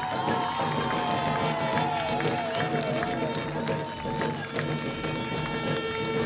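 Live folk music for a Jharkhand folk dance: several voices singing wavering, sliding notes over steady drumbeats, with crowd noise, settling into a held note near the end.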